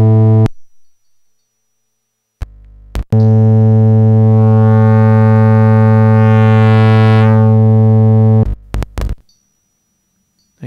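Low, steady synthesizer tone: an oscillator's triangle wave hard-clipped by a Plankton NuTone distortion module into a near-square wave. It cuts out about half a second in, a short low buzz sounds near three seconds, then the tone returns for about five seconds, growing brighter in the middle and duller again, before it stops with a few short blips.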